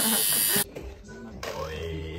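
Steady electric buzz under voices, cut off abruptly just over half a second in, followed by a quieter low hum with faint voices.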